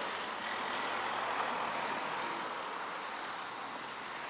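Road traffic noise: a vehicle going by out of sight, its tyre and engine sound a steady hiss that slowly fades.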